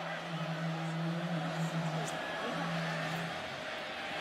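Stadium crowd noise carried on a TV game broadcast: a steady haze of many voices, with a sustained low drone underneath that stops shortly before the end.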